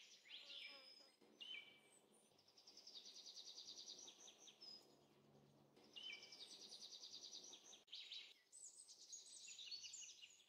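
Faint songbird song: fast trills repeated every couple of seconds, with short whistled notes between them.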